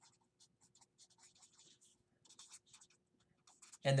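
Felt-tip marker writing on a paper legal pad: a run of short, faint scratching strokes as a word is written, with a brief pause about two seconds in.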